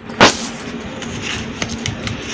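Rice flour being mixed in a red plastic bowl: a sharp knock just after the start, then steady scratchy rustling with scattered small clicks.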